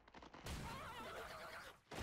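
Faint audio from the anime playing quietly: a high, wavering vocal cry beginning about half a second in.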